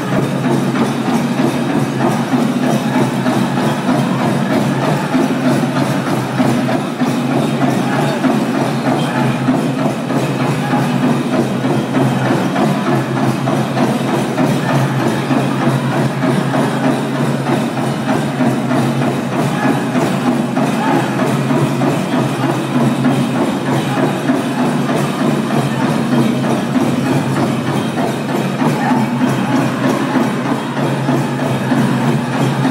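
Powwow drum group performing a men's chicken dance song: voices singing together over a steady beat on a large hand drum.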